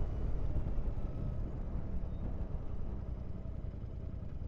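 Royal Enfield Interceptor 650's parallel-twin engine running steadily at road speed, mixed with wind and tyre noise, growing a little quieter near the end.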